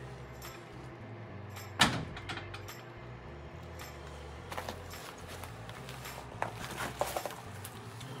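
One sharp knock about two seconds in, as the enclosure door is pushed shut, followed by a few faint clicks and scuffs over a low steady hum.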